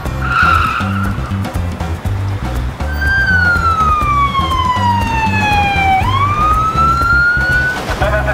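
Police vehicle siren wailing: one slow cycle that falls in pitch for about three seconds, then sweeps back up, over background music with a steady beat.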